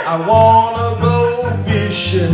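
Two acoustic guitars playing an acoustic blues song, strummed chords over a repeating low bass-note pattern.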